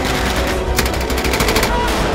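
A burst of rapid automatic gunfire about a second long, starting near the middle, over a steady bed of dramatic background music.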